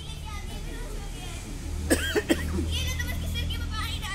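Children's voices on stage, with a short, loud, high-pitched vocal outburst about two seconds in, over a steady low hum.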